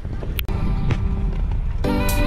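Low steady rumble of wind buffeting a GoPro's microphone while riding a bicycle. Background music with a beat comes in loudly near the end.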